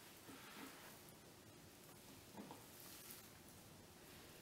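Near silence: room tone, with one faint soft sound about two and a half seconds in.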